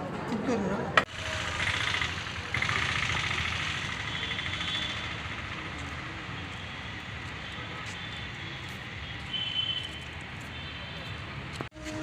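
Steady outdoor road traffic noise. A man's voice is heard briefly at the start.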